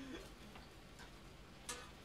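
Faint room tone with two small clicks, a light one about halfway and a sharper, louder one about three-quarters of the way through.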